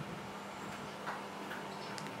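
Quiet room tone: a faint steady hum with a few faint, irregular ticks.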